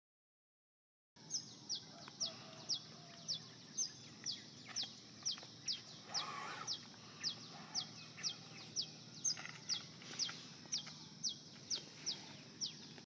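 A bird repeating a short, high chirp that sweeps downward, about twice a second, starting about a second in, over a faint steady low hum of background ambience.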